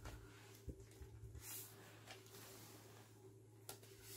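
Near silence: room tone with a steady low hum and a few faint handling noises, soft thumps and light rustles, as folded paper slips are drawn by hand.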